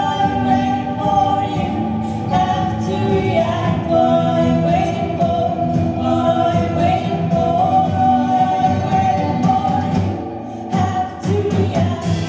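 Live band performance: a woman's voice singing long held notes, with other voices joining in, over guitar and band accompaniment. The music thins out briefly near the end, then picks up again.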